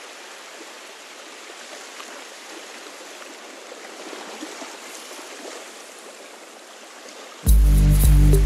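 Opening of a song: a steady rushing wash of sea-like noise with no low rumble, then about seven and a half seconds in the band comes in abruptly and loudly with a heavy bass line and a beat.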